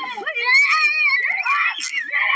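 A woman screaming and yelling in a high, strained voice, with no break.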